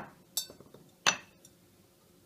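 Two light clinks, about a third of a second in and about a second in, as date halves are dropped into a clear plastic blender cup on top of soaked cashews.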